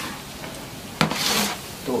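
A long wooden paddle stirs a thick, sticky wajit mixture of coconut and sugar in a large pan. About a second in there is a knock, then a rasping scrape of the paddle through the stiff mixture, which takes extra effort to turn.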